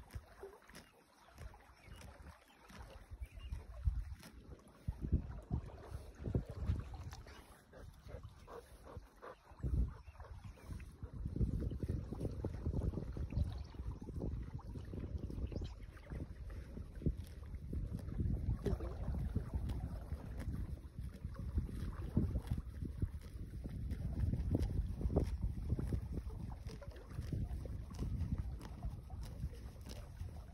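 Wind buffeting the microphone in gusts, heavier from about a third of the way in, over many short tearing and crunching clicks of a horse cropping and chewing grass close by.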